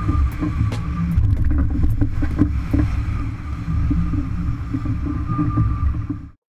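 A sailing yacht driving hard through waves: wind buffeting the microphone and water rushing along the hull make a loud, rumbling roar. A faint steady high tone runs underneath, with scattered small knocks and clicks from the deck gear.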